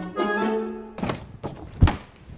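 Background music with held notes that cuts off abruptly about halfway through. It is followed by three knocks, the last and loudest a heavy thump near the end.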